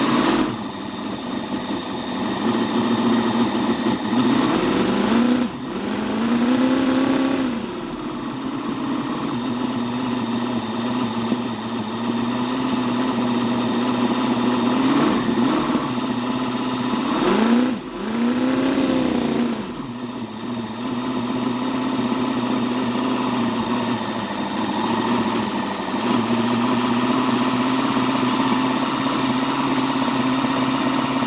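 One-third-scale model Ford 8BA-style flathead V8 engine running at a steady idle, its revs rising and falling back several times, around five to seven seconds in and again between about fifteen and twenty seconds, as the throttle is worked at the carburettor.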